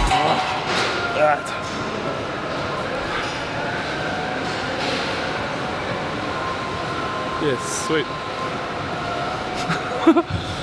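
Steady background din of a busy gym, with indistinct distant voices now and then.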